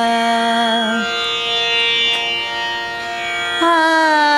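A woman singing an alap in Raag Yaman in akar, on an open "aa" vowel. A long held note bends downward about a second in and fades, and a new, stronger note enters near the end. A steady drone carries on beneath.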